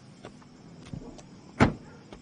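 A Honda hatchback's door shuts with a single solid thud about one and a half seconds in, after a few faint light clicks.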